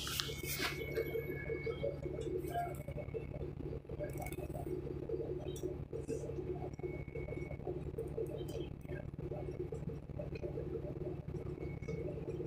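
Cabin sound of a 2008 Van Hool A300L transit bus with its Cummins ISL diesel engine running, a steady low drone, overlaid with interior rattles and light clinks.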